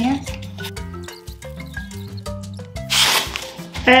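Background music over gift-wrapping paper being cut with scissors and handled, with a loud burst of paper crinkling about three seconds in.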